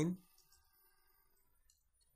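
Mostly near silence, with one faint click of a computer keyboard key late on as the next line is started in the text editor.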